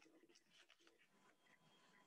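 Near silence: faint room tone, with a few faint short clicks.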